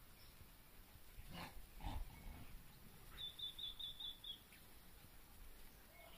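A small bird gives a quick run of six short, high chirps, evenly spaced at about five a second, some three seconds in. Shortly before it come two soft rustles, about a second and a half and two seconds in, over faint background.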